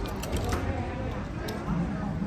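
Background murmur of young children's voices, with a few light clicks.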